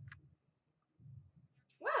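Faint handling of trading cards, with a brief light tick about a tenth of a second in as a card is laid in a plastic bin. A woman's voice says "wow" near the end.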